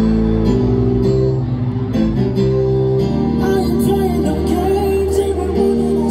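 Keyboard piano playing slow, held chords that change about once a second, with a man starting to sing over them about halfway through.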